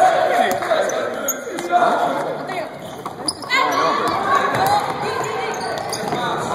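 A basketball bouncing repeatedly on a hardwood gym floor, short sharp bounces that ring in a large hall, with players' voices calling over them.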